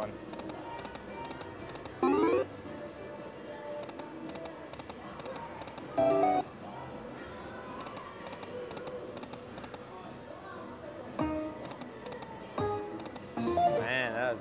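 Electronic sounds of an Aristocrat Buffalo Link video slot machine being played: a short rising chime about two seconds in, a louder burst of chime tones around six seconds, and shorter tones near the end as the reels stop on losing spins. Casino background din with distant voices runs underneath.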